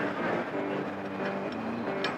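Steady background noise of a busy exhibition hall, with faint steady pitched tones running under it.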